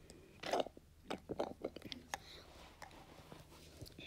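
A child drinking milk through a straw and swallowing: a string of short, wet mouth clicks and gulps, the loudest about half a second in, with a cluster of them a second later.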